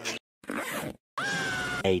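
Cartoon sound effects: a short scratchy rasp, then after a brief gap a held, steady high-pitched squeal.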